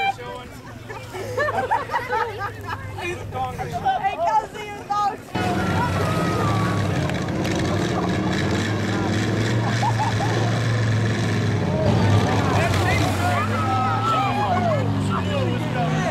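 Crowd voices and shouting; about five seconds in, after an abrupt change, a vehicle engine runs steadily under the voices, its pitch shifting near the end.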